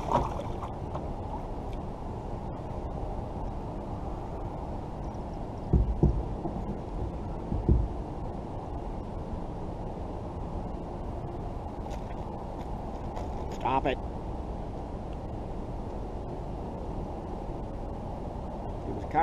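A small channel catfish being landed in a kayak: two dull thumps, about six and about eight seconds in, against a steady low rumble.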